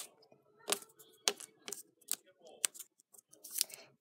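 Hand-handling sounds of a small book being worked open with one hand: a handful of sharp clicks and soft rustles, spread unevenly.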